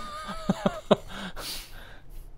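Two men laughing softly in a few short chuckles.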